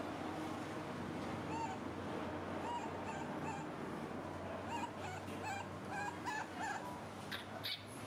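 A baby macaque giving a string of short, high-pitched squeaks and whimpers, over a steady low hum. A few sharp clicks follow near the end.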